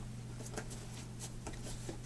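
Soft rubbing and a few faint clicks from hands working the rubber of a gas mask while fitting its cheek filters, over a steady low hum.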